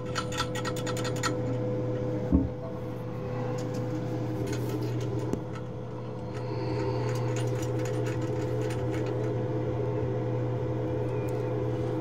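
Rapid even ticking, about eight ticks a second, that stops a little over a second in, over a steady low hum with light rubbing and scraping; a single knock comes about two seconds in.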